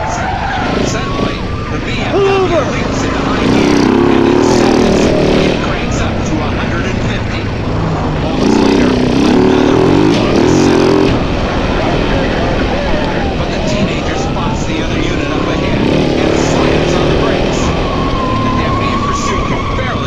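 Police siren wailing, its pitch sweeping slowly up and down, over a vehicle engine running hard, which gets louder for two stretches of a couple of seconds each.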